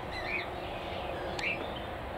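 Small birds chirping: a couple of short, rising chirps near the start and another about a second and a half in, over faint steady background noise.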